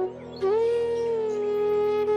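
Relaxation music on flute: after a short pause, one long held flute note begins about half a second in, sliding up slightly into pitch and then sustained over a steady low drone.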